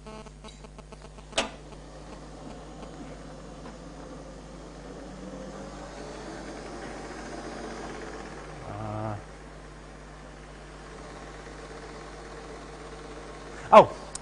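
A steady low hum of equipment, with a quick run of small clicks in the first second and one sharper click about a second and a half in. A faint rushing builds in the middle, and there is a brief low murmur about nine seconds in.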